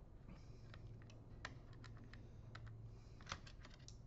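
Faint, irregular small clicks and ticks of a screwdriver and hands working on the metal chassis of an opened all-in-one PC, with the sharpest click about three seconds in. A low steady hum runs underneath.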